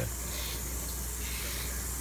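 Steady background hiss with a low hum underneath, unchanging throughout; no distinct event.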